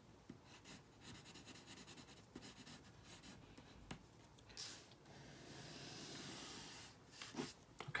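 Faint graphite pencil strokes on paper while a violin bow is sketched: a run of short scratchy strokes, then a longer, smoother stroke.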